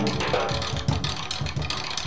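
Improvised jazz drumming on a drum kit: a fast, even run of low drum strokes, about five a second, under hissing cymbals.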